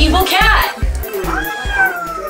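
A cat meowing, with one long meow that falls slowly in pitch over the second half, over background music with a steady beat.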